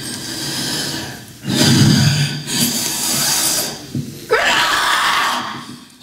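A woman breathing hard and gasping in loud, rough, strained stretches of voice without words, the loudest in the middle and another near the end.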